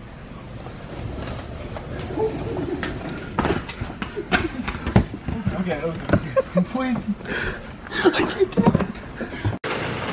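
People laughing and talking indistinctly, with scattered knocks. Under the voices in the first few seconds there is a low rumble of a large plastic wheeled trash bin rolled along a store floor.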